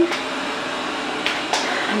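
Robot vacuum cleaner running, a steady even noise.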